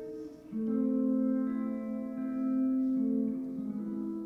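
Live jazz music: electric guitar playing slow, long held chords, a new chord swelling in about half a second in and changing a couple of times after.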